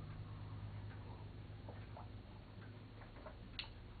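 A man sipping and swallowing water from a glass in a quiet room: a few faint, irregular small clicks over a steady low hum, with a sharper click near the end.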